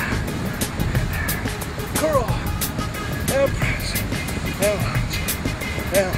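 Background music with a steady beat, with a short rising-and-falling vocal sound recurring about every second and a quarter.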